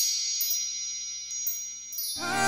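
Chimes in the background score ringing on alone after the rest of the music drops out, fading steadily, with a few light high strikes in the second half.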